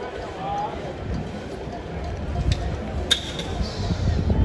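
Stadium background: indistinct distant voices and crowd murmur over a low rumble. A sharp click comes about three seconds in.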